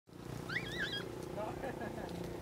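A short warbling bird call about half a second in, sweeping up and then wavering, with fainter chirps near the end, over a steady low rumble.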